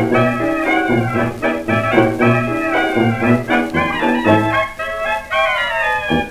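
1920s dance-band recording played from a 78 rpm record: band music over a steady, even bass beat. It has the narrow, top-less sound of an old disc.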